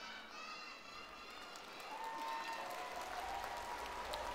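Soft audience applause, with young children's voices calling out together over it in the first couple of seconds.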